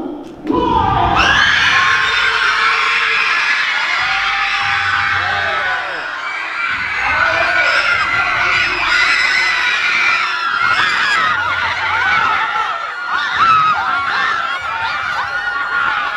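Large crowd of young people shouting and screaming all at once, loud and continuous, starting abruptly about half a second in.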